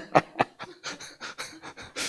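A man laughing softly: a run of short, breathy chuckles, about four or five a second, the first ones voiced and the rest fading to breathy puffs.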